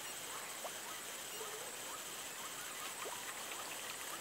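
Faint waterside outdoor ambience: a steady high hiss like an insect chorus, with scattered short faint chirps.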